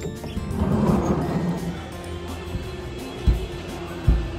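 Music playing steadily, with a swell of noise about a second in and a low thump near the end.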